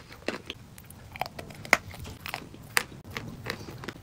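Close-up crunching and chewing of a mouthful of chalk: irregular crisp crackles roughly every half second, the sharpest about halfway through and again near three seconds in.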